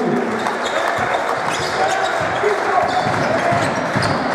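A basketball being dribbled on a hardwood court, its bounces knocking over the steady chatter and calls of the arena crowd.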